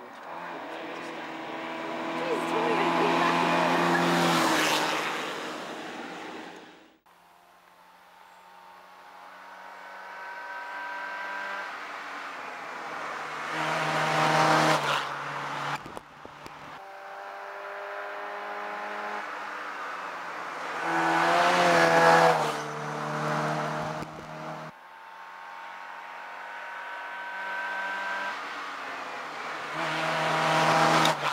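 Fiat Cinquecento hillclimb cars running up through a cone chicane one after another. Each engine note grows louder and rises and falls with throttle and gear changes as the car comes past. The sound cuts off abruptly three times between cars.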